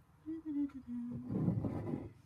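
A low, drawn-out voiced sound that steps down in pitch. From just past a second in, a louder rough grinding scrape follows as a ceramic mug is turned around on the countertop.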